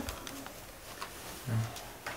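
A short, low hum from a person's voice about one and a half seconds in, over quiet room noise with a few faint ticks.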